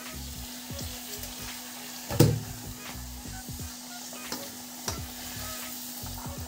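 Puris deep-frying in hot oil, a steady sizzle, with a single sharp knock about two seconds in and a few lighter clicks.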